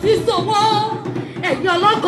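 A voice singing a melody in held, wavering notes, with little instrumental backing.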